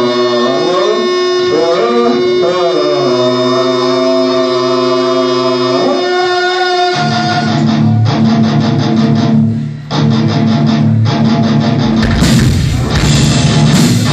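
Live noise-rock band: distorted electric guitar and bass hold droning notes whose pitch slides up and down. About halfway through, heavy distorted riffing takes over, and near the end the full band with drums and cymbals comes in loud.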